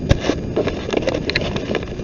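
Handling noise on a handheld camera's microphone: an irregular rumble with scattered knocks and clicks as the camera is moved.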